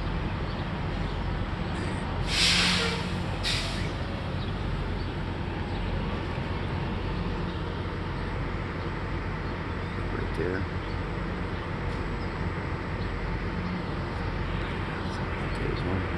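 Steady outdoor background noise with a low hum. About two seconds in comes a loud hiss lasting under a second, followed shortly by a shorter one.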